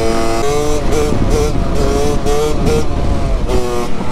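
KTM 65 two-stroke single-cylinder engine revving high on the move. Its pitch dips briefly and climbs again several times, over wind noise on the microphone.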